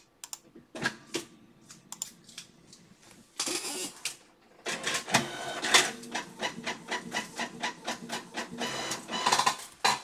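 A small machine running with a rapid, even clicking over a steady hum, starting about halfway in and stopping just before the end; a few scattered clicks and a brief burst of noise come before it.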